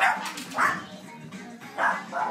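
A dog barking three times, short separate barks, over background music.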